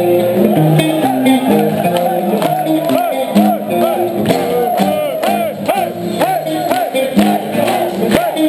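Thrash metal band playing live: distorted electric guitars, bass and drums working through a melodic riff at a steady beat.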